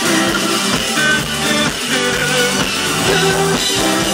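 Loud live rock band playing, with electric bass guitar, guitar and drums.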